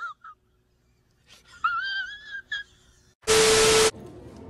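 Audio of an edited-in film clip: after a near-silent pause, a high, wavering whine for under a second, then a loud harsh buzz lasting about half a second that starts and cuts off suddenly.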